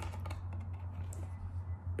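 Stiff cardboard pages of a board book being turned and handled: a few soft clicks and taps, over a steady low hum.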